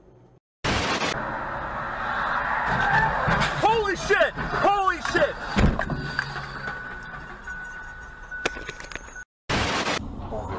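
Dashcam audio of a car on the road: steady road and engine noise, two rising-and-falling cries from people in the car in the middle, then a heavy thump about five and a half seconds in.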